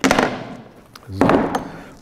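Plastic grass-catcher box of a Makita cordless lawn mower being taken off and set down on a wooden table: one sharp clack, then a short scraping rattle that dies away within about a second.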